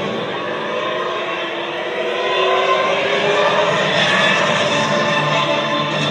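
Soundtrack of a video played over a stadium's public-address speakers: music mixed with a steady, dense rushing sound.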